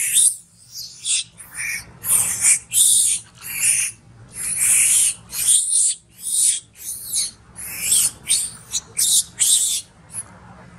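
A young long-tailed macaque screaming loudly in a rapid string of short, high-pitched shrieks, about one and a half a second. These are distress screams from a monkey being bitten and pinned down by other juveniles.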